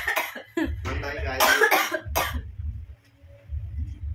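Short, loud vocal bursts from a person through about the first two seconds, then much quieter.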